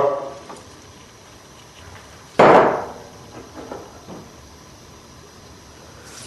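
Wholemeal flour being poured and tipped into a stainless steel mixing bowl, with one sharp knock about two and a half seconds in that dies away quickly, then a few fainter knocks and rustles.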